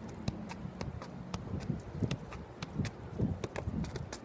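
A soccer ball being juggled, with a run of dull thuds as it bounces off the feet and thighs, the touches coming thicker in the second half.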